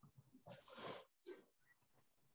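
Faint breathing: three short breaths close to the microphone, near the threshold of silence.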